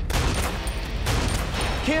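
Rapid gunfire, about three sharp shots a second, over a steady low rumble.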